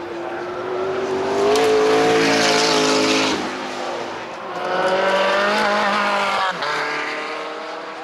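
A high-performance car accelerating hard. Its engine note climbs, drops sharply at an upshift just before the middle, climbs again and drops at a second upshift late on.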